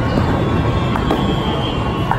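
Arcade noise from the surrounding games: electronic game music and steady tones over a continuous low rumble.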